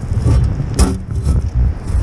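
Wind buffeting the camera microphone in a steady low rumble, with one sharp click or crunch a little before halfway.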